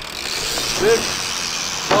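BMX tyres rolling on a wooden ramp and concrete, a steady hiss. There is a short vocal sound about a second in and a sharp knock at the end.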